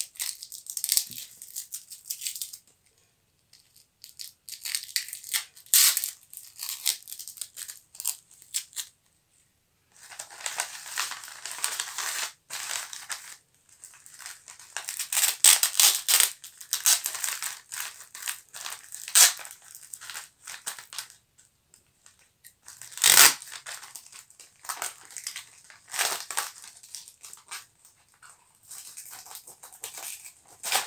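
Brown wrapping paper and bubble wrap crinkling and rustling as they are handled and folded around a parcel, in irregular bursts with short pauses. One sharper, louder crackle about 23 seconds in.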